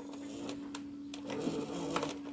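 Old Panasonic auto-stop cassette recorder's mechanism running with a steady hum and a few light clicks while the play key is held down. It keeps running only while the key is pressed, which the owner puts down to a loose switch or a belt needing replacement.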